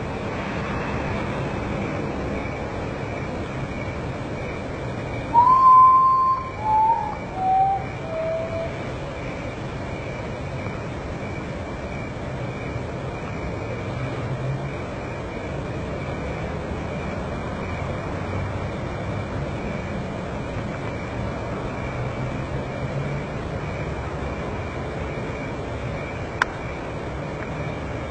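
A common potoo singing its mournful song about five seconds in: one long whistle followed by three shorter ones, each lower in pitch than the last. A steady low hum and a thin, high, steady tone run underneath throughout.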